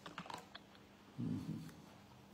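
Faint clicking of computer keys being typed, a handful of keystrokes, with a short low sound about a second in.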